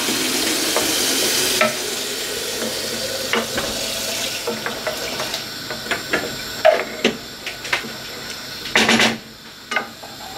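Wooden spoon stirring thick, simmering mince sauce in non-stick pans, with wet scraping and sharp knocks of the spoon against the pan over a low sizzle. A loud steady hiss in the first second and a half drops away suddenly.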